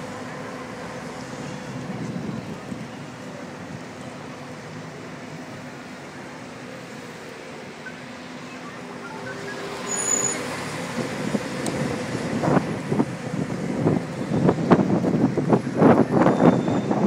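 City traffic and the tour bus's engine heard from its open top deck, a steady low hum. From about two thirds of the way through, gusty wind buffets the microphone and grows louder as the bus moves on.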